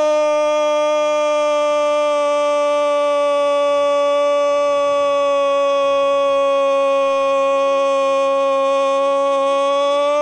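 A male radio football commentator's long held cry of "gol", one unbroken note at full voice whose pitch sinks only slightly: the call for a goal just scored.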